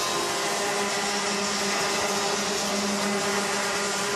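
Rotax Mini Max two-stroke racing kart engines running at speed on the track, a steady, even-pitched drone.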